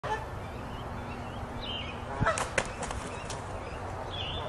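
Birds calling with short, wavering calls over a steady background, and a few sharp clacks a little over two seconds in that are the loudest sounds.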